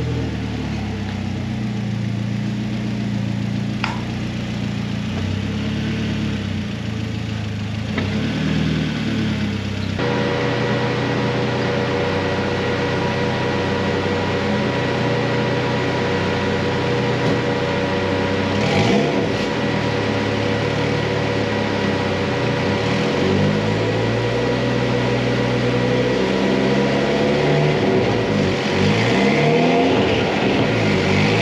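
Off-road race car's engine running on a chassis dyno. Its exhaust goes through a silencer that is wider along its whole length. From about ten seconds in, a steady high whine runs alongside it, and the engine speed swings up and down briefly a few times in the second half.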